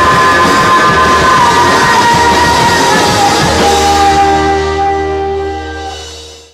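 Live rock band with drums, electric guitar and a woman singing, playing loudly, then ending on a held chord that fades out over the last couple of seconds.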